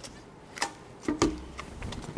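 A few light, separate plastic clicks and knocks as a clear plastic housing and a cable tie are handled.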